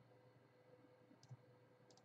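Near silence, with faint computer mouse clicks: one about a second in and another near the end.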